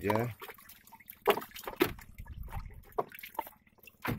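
Wet fish being dropped one at a time into a plastic mesh basket, with drips: a few short, separate wet knocks.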